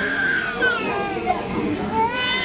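A small child crying in distress while its head is shaved with a razor, high wavering wails that fall in pitch, several times over.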